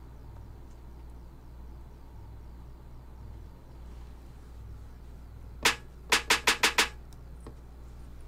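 Snare drum sample triggered from a Maschine Studio pad controller: a single hit about five and a half seconds in, then a quick run of six hits, roughly seven a second. A low steady hum lies under the rest.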